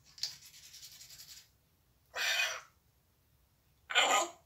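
African grey parrot making raspy, scratchy noises: a fluttering rasp over the first second and a half, then two short, louder rasping bursts, one about two seconds in and one at the end.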